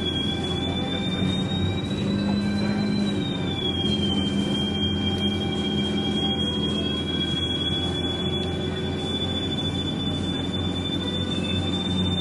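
Bustech CDi double-decker bus in motion, heard from inside the passenger cabin: a steady low drone from the running drivetrain under a thin high-pitched whine that drops about three to four seconds in and then slowly climbs again.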